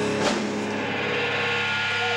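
Live amplified rock band: a single sharp crash about a quarter second in, then held, ringing electric guitar tones.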